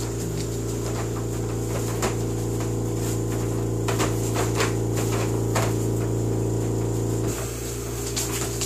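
A steady low electrical hum with a stack of overtones, which cuts out abruptly a little after seven seconds in. Scattered light clicks and taps sound over it.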